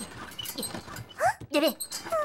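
High, squeaky cartoon-character voices chattering and whimpering in wordless gibberish, with a quick run of rising and falling yelps about one and a half seconds in.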